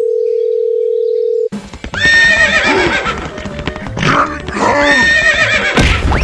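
A steady single-pitch telephone tone for about a second and a half, then a horse whinnying repeatedly over background music. A sudden thud comes near the end.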